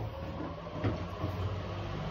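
Low steady hum of room noise, with a faint click a little under a second in.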